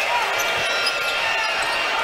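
Live basketball court sound: a ball being dribbled on a hardwood floor and sneakers squeaking, over steady arena crowd noise.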